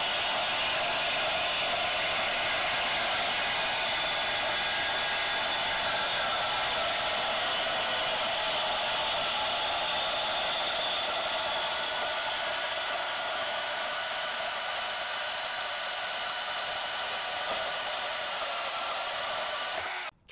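DeWalt 20V Max cordless deep-cut bandsaw's brushless motor and blade running steadily as it cuts through a thick steel pipe, making a continuous high whir that never cuts out. The safety paddle switch is held down the whole way. The sound eases slightly over the second half and stops suddenly at the end as the cut finishes.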